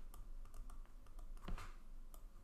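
Faint, irregular clicks and taps of a stylus nib on a tablet as words are handwritten, with one louder knock about one and a half seconds in.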